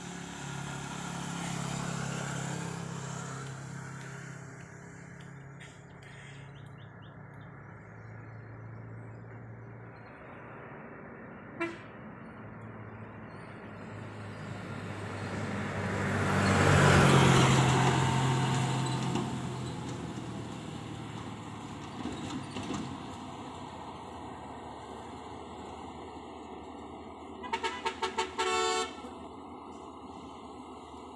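Truck diesel engines running as they climb, a vehicle passing close by about halfway through that swells and fades, and a rapid string of short horn toots near the end.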